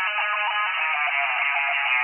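Electric guitar playing the opening riff of a psychedelic hard rock song, put through a narrow filter so it sounds thin and tinny, with no bass and no bright top.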